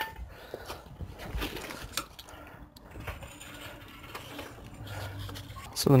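A floor jack being let down, lowering the car onto its front wheel: faint scattered clicks and creaks as the suspension settles.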